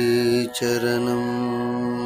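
Tamil devotional chant sung over musical accompaniment, the lines praising "Saami". A long note is held, broken briefly about half a second in, then held again.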